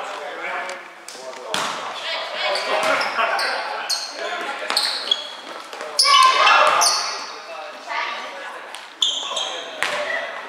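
Indoor volleyball rally in a large, echoing gym: several sharp slaps of the ball being hit, sneakers squeaking briefly on the hardwood floor, and players calling out. The busiest, loudest moment is a play at the net about six seconds in.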